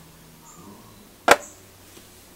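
Quiet room tone, then one sharp click a little past halfway as a small plastic watercolour half pan of cobalt blue is handled while a brush is loaded from it.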